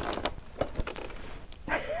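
Faint rustling, scraping and light knocks of packaging as a sewing machine in its foam end caps is lifted out of a cardboard box; a laugh begins at the very end.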